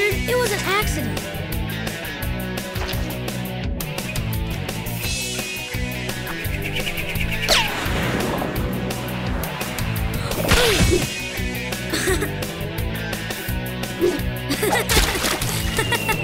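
Cartoon background music with a steady, repeating beat, with a few short swooping sound effects about halfway through.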